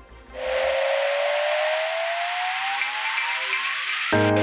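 Broadcast transition sound effect: a whooshing riser, a swell of hiss with a single tone gliding slowly upward in pitch, building for about three and a half seconds. A quiet music bed fades out under it in the first second.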